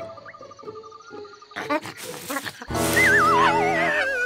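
Cartoon soundtrack music and sound effects: a quiet, sparse stretch, then a loud wavering tone that slides downward over the last second.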